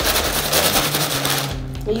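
Brown packing paper being crumpled and crinkled in the hands, a dense, rapid crackle that stops about a second and a half in.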